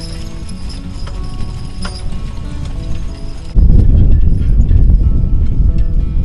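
Background music over the hoofbeats of a work horse and mule team pulling a riding plow. About halfway through, a loud low rumble cuts in abruptly and becomes the loudest sound.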